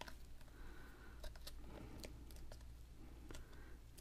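Faint paper handling: fingertips pressing and rubbing a glued paper cutout onto a paper collage panel, with scattered small ticks and soft rustling.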